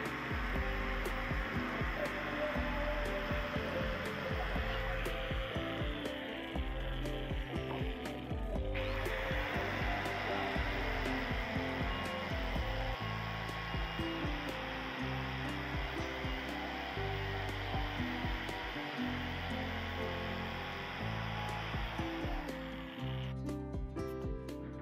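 Angle grinder fitted with a buffing pad running steadily against stainless steel with a steady whir, dipping briefly about eight seconds in and stopping near the end. Background music plays underneath.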